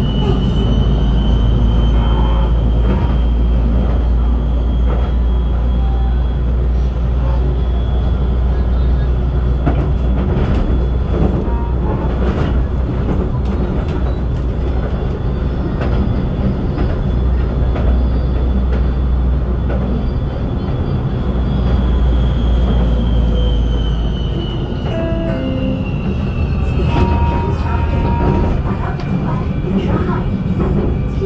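Ampang Line LRT train heard from inside the carriage: a steady rumble of wheels on rail with a high motor whine. The whine rises slightly in pitch at the start and falls in the last several seconds as the train slows towards the next station, with occasional knocks from the track.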